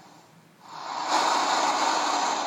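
Road traffic noise that swells up about half a second in and then holds steady: a car passing close on a city street, heard through a television's speaker.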